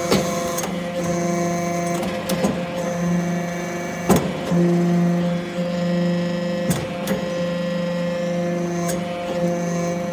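Hydraulic metal-chip briquetting press running through its pressing cycle: a steady machine hum whose tones cut in and out in stretches of a second or two as the load changes, with a thin high whine coming and going. A handful of sharp metallic clanks sound at irregular moments, the loudest about four seconds in.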